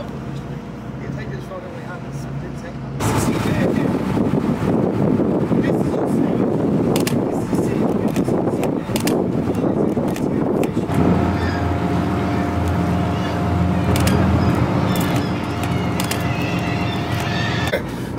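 Boat engine running with a steady drone. About three seconds in, a loud rush of churning water and wind comes in. From about eleven seconds, the engine's even hum stands out again over the water noise.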